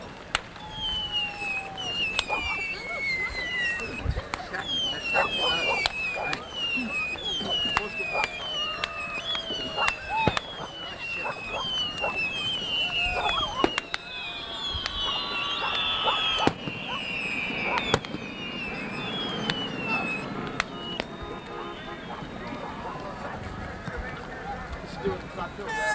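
Fireworks display: a string of short falling whistles, about one a second and crowding together for a few seconds past the middle, among scattered sharp bangs and crackles.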